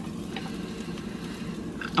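Butter and olive oil sizzling faintly and steadily in a frying pan as chopped garlic is scraped in from a knife, with a faint tick early on.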